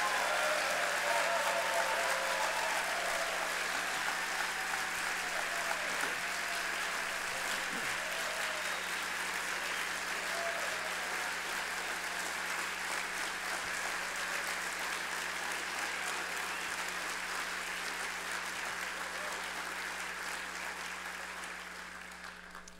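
A large audience applauding for about twenty seconds, with a few voices calling out over the clapping in the first several seconds; the applause slowly dies away near the end.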